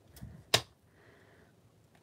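A clear acrylic stamp block handled over the desk, with one sharp click about half a second in as the block comes down onto the paper.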